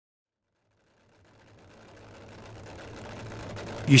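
Supercharged V8 engine of a Nostalgia Funny Car idling, just fired up, fading in gradually from silence as a steady low hum with a faint even pulse.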